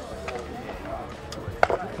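Faint murmur of voices over outdoor background, with one sharp click or knock about one and a half seconds in.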